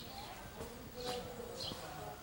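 An insect buzzing faintly outdoors, with short high chirps recurring about twice a second.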